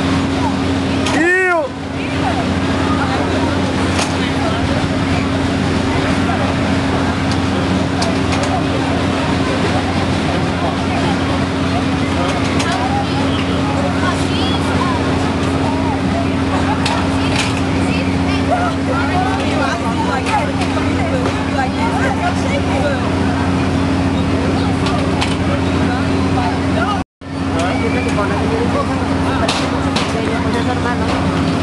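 Many people talking at once over a steady low machine hum. A short pitched sound rises and falls about a second and a half in. Near the end the sound cuts out completely for a fraction of a second.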